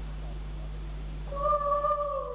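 Operatic soprano voice enters about a second and a half in on a long held high note.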